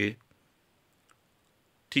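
A near-silent pause between spoken phrases, broken by one faint, short click about a second in.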